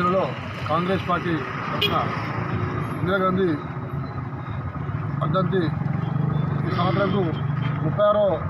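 A man speaking to camera with a motor vehicle engine running on the road behind him. A steady low engine hum is plainest through the second half, under his speech.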